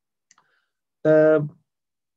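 A man's voice holding a steady hesitation vowel, an 'eee' of about half a second, a second in. It is preceded by a couple of faint clicks.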